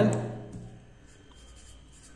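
A pen writing on paper, faint scratching strokes as letters are written, after a man's voice trails off at the start.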